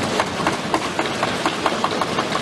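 Parliament members thumping their desks in applause: a dense, irregular patter of many knocks over a steady crowd noise.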